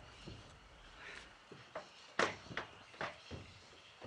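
Footsteps on a corrugated metal roof: a string of irregular knocks and taps, the loudest a little past halfway.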